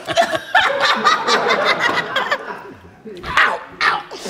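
People laughing and snickering, dying down about two and a half seconds in, then two short bursts of laughter near the end.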